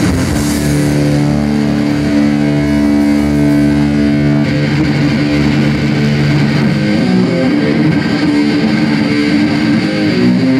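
Live punk band playing loud distorted electric guitar and bass. For the first few seconds a chord is held and left ringing, then the band breaks into a busier passage.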